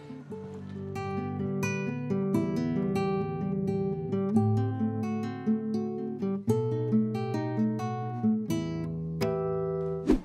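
Classical nylon-string guitar played fingerstyle: a piece of separately plucked notes, several a second, with a melody over bass notes.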